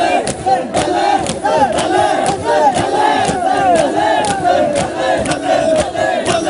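A crowd of men beating their chests in unison with open palms (matam), sharp slaps about twice a second, while many voices chant loudly together.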